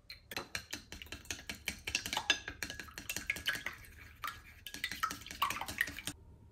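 Wooden chopsticks clicking rapidly against the sides and bottom of a glass container while beating raw eggs, several strikes a second, with a brief pause about four seconds in.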